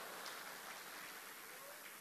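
Faint room tone: a low, even hiss, fading slightly, in a pause between a man's sentences.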